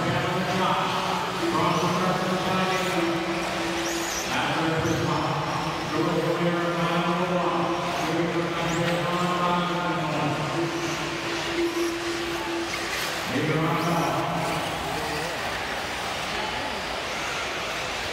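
Race announcer talking over an arena PA system, his words blurred by the hall's echo, with a steady wash of background noise underneath.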